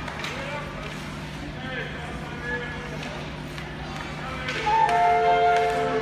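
Voices echoing in an ice rink hall over a steady low hum. About four and a half seconds in, music starts on the arena's public-address system with held notes, and it grows louder.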